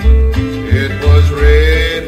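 Instrumental passage of a country song: a bass line in steady alternating notes under plucked strings, with a lead line that slides up and down in pitch about halfway through.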